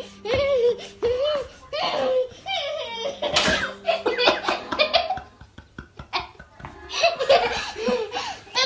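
A small child giggling and laughing in short bursts, with a quieter lull a little past the middle.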